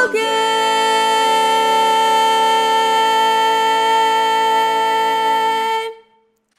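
Four-part barbershop-style a cappella chord sung by one woman's multitracked voice, held as the closing chord. The top notes stay steady while the lower parts step to new notes twice, then all voices cut off together just before the end.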